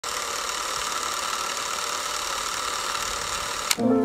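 A steady mechanical whirring hiss, cut off by a single sharp click near the end, after which music begins.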